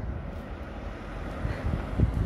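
Low street rumble of vehicle engines, with wind buffeting the microphone in a few low thumps near the end.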